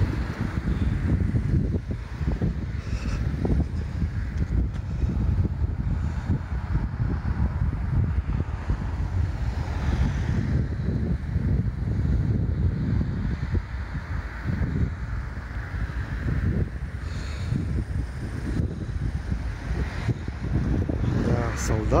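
Wind buffeting the microphone: a low, gusting rumble that rises and falls unevenly.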